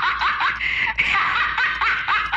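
A novelty laughing pen's voice chip playing a recorded high-pitched cackling laugh, a quick string of short rising 'ha' syllables, several a second, set off by pressing the pen's button.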